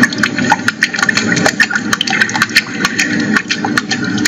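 A small engine running steadily, with many sharp, irregular clicks over it.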